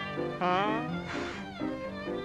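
Early-1930s cartoon orchestral score with steady held notes. About half a second in, a sliding cry rises and then falls, followed a moment later by a short hissing noise.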